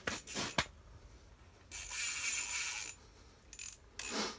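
A few sharp mechanical clicks, then a harsh scrape lasting about a second, starting just under two seconds in.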